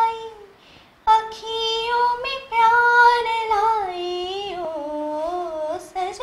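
A woman singing solo without accompaniment, holding long notes that bend and waver in pitch, with a short pause for breath about a second in.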